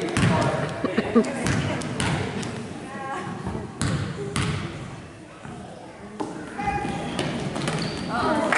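A basketball bouncing on a gym's hardwood floor, a handful of separate thuds, over the chatter of spectators in the gym.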